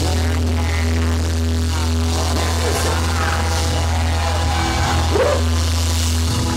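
Live pop-rock band holding a sustained low chord after the drum beat has stopped, with a few short sliding vocal sounds over it.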